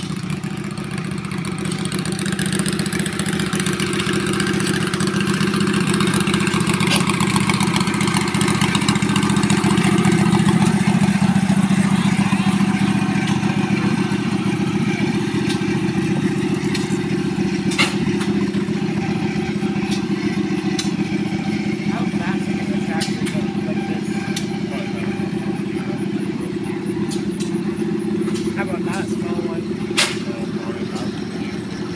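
John Deere 420 tractor's two-cylinder engine running steadily at idle, growing a little louder about ten seconds in and then easing back, with a few sharp clicks in the second half.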